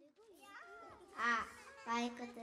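Young children's voices calling out and chattering, with a louder high-pitched call a little over a second in and another near the end.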